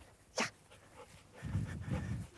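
A golden retriever panting as it trots, the breathing growing clearer in the second half, with one short sharp noise about half a second in.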